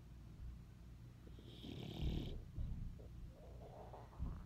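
A sleeping puppy snoring softly, with one clear snore about two seconds in followed by a few quieter breaths.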